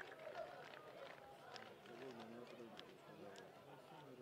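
Faint, indistinct voices of players and onlookers, with a few light clicks scattered through.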